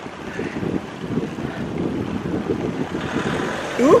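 A motor vehicle coming up from behind a slow-moving bicycle, its tyre and engine noise growing louder near the end, over a steady rush of wind and road noise.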